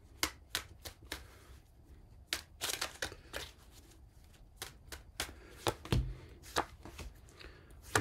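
Tarot cards being shuffled and drawn by hand: an irregular series of crisp flicks and taps, with a few soft knocks late on.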